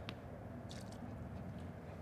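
Faint, soft handling sounds as a small clay tea vessel is moved about the tea table: two or three light rustles over a low room hum.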